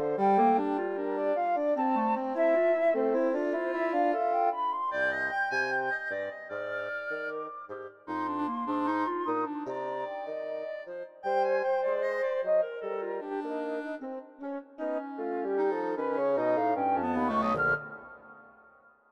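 Woodwind trio of flute, clarinet and bassoon playing contemporary chamber music in busy interweaving lines, with low bassoon notes coming in about five seconds in. Near the end the low line slides down while the upper lines climb, and the music then stops.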